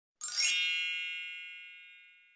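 Logo-intro chime sound effect: a quick rising sparkly shimmer about a quarter second in, settling into a bright, many-toned ding that rings and slowly fades away.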